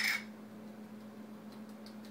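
Small kitchen handling sounds as a salad is mixed and seasoned: one brief clatter right at the start, then a few faint ticks near the end over a low steady hum.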